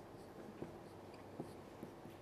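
Marker pen writing on a whiteboard: faint scratchy strokes with a few light taps of the tip against the board.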